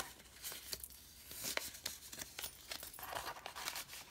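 Paper and card handled by hand: soft rustling and sliding as a small tag goes into a paper pocket and a journal page is touched, with a few light clicks and taps.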